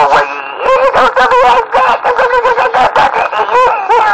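A voice over a CB radio's speaker making wavering, wordless vocal noises that rise and fall in pitch, after a brief steady tone at the very start.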